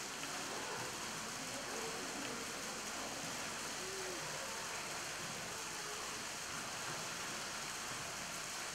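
Steady rushing of running water, an even wash with no breaks, with a faint short pitched sound about four seconds in.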